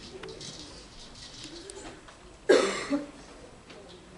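A loud cough about two and a half seconds in, a sharp burst followed by a smaller second one about half a second later.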